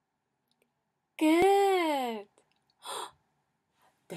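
A woman's drawn-out, wordless vocal exclamation, about a second long, its pitch rising and then falling, with a sharp click near its start. A short breathy exhale follows about a second later.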